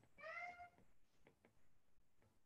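A faint cat meow: one short call of about half a second near the start, slightly rising in pitch. A few faint light taps follow.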